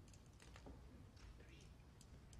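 Near silence with a few faint, light clicks and taps: utensils handling pies on a pie dish.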